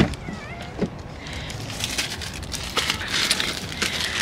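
Fleece jacket fabric rubbing and rustling against the phone's microphone as the phone moves, with scattered light handling clicks. A faint, short wavering squeak comes about half a second in.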